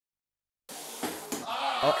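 Dead silence for the first two-thirds of a second, then a steady hiss-like noise starts abruptly, with a man's voice coming in over it near the end.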